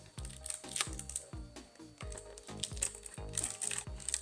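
Soft background music, over the small crinkling and crackling of a foil heart balloon and wide adhesive tape as hands press the tape down over the balloon's neck.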